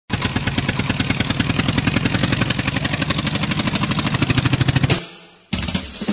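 A tractor engine chugging with rapid, even beats of about ten a second, stopping suddenly about five seconds in.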